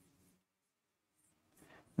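Near silence: quiet room tone with a few faint, soft scratchy noises.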